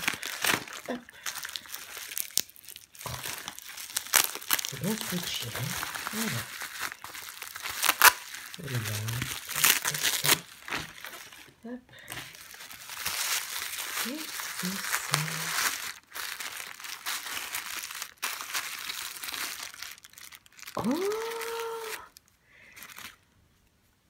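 Gift wrapping paper being unwrapped by hand, crinkling and tearing in a long run of rustles and sharp crackles that stops about three seconds before the end.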